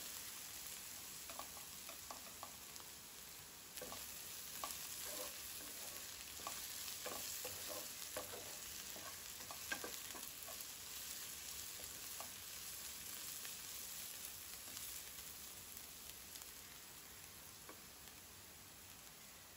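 Chopped onions frying faintly in a granite-coated nonstick wok, a steady sizzle under light scraping taps of a wooden spatula stirring them; the taps die away in the last few seconds as the stirring stops.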